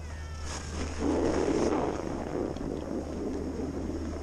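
A brief high gliding squeak in the first second, then a snowboard sliding over packed snow from about a second in: a steady rushing hiss with wind on the microphone.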